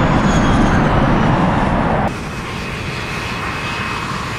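Ilyushin Il-76 jet transport's four turbofan engines running loud, then, after a sudden drop about halfway through, running more quietly with a faint high turbine whine as the plane taxis.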